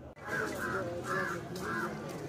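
A crow cawing, a series of short harsh caws in quick succession, over a low background of street noise.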